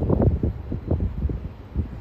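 Wind buffeting the phone's microphone outdoors, an uneven low rumble in gusts.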